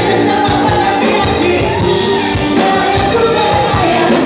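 A pop song performed live: several singers singing together into microphones over a band, with a steady beat.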